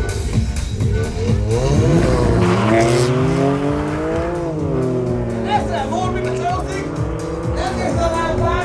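BMW M4 and VW Golf R launching off a drag-strip start line and accelerating hard, the M4's twin-turbo straight-six nearest; engine pitch climbs steeply and drops at each gear change, most clearly about four and a half seconds in. Music plays underneath.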